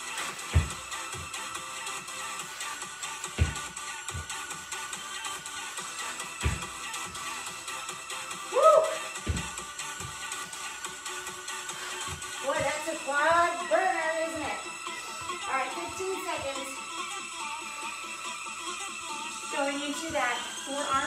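Background electronic workout music with a steady beat, with a heavy thump of feet landing on a wooden floor about every three seconds from repeated jump reps. A short voice sound comes near the middle, and more voice-like sounds follow a few seconds later.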